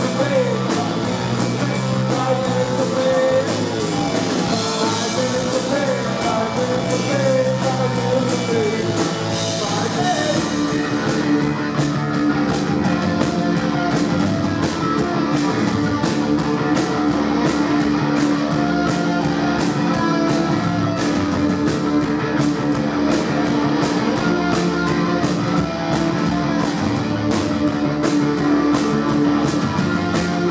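Live rock band playing: distorted electric guitar, bass and drums, with singing over roughly the first ten seconds. After that the voice drops out and the band plays on with a long held note over a steady drumbeat.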